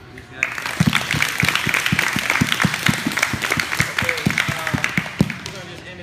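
A group of people clapping and applauding, breaking out about half a second in and dying away near the end, with a few voices mixed in.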